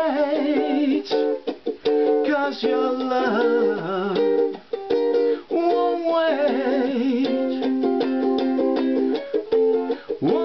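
A ukulele strummed in a reggae-style rhythm, with a man singing along in a small room.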